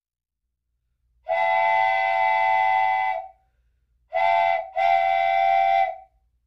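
Train whistle sound effect blowing three times: a long blast about a second in, then a short blast and a longer one near the end, each a steady chord of several tones.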